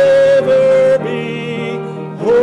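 A man singing a solo gospel song with instrumental accompaniment, holding a high note for about a second and then another.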